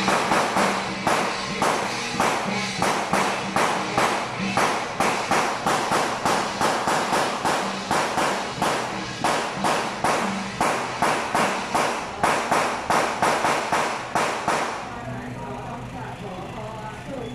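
A procession percussion troupe's hand-held flat drums, beaten in a steady marching rhythm of about three strikes a second. The beating stops about fifteen seconds in.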